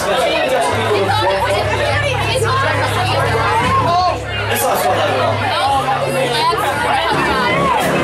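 Loud crowd chatter close to the microphone over a live rock band playing electric guitars, bass and drums, with steady low bass notes held underneath.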